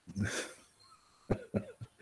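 A person's short breathy vocal bursts, not words: one soft huff near the start, then a few quick sharp ones past the middle.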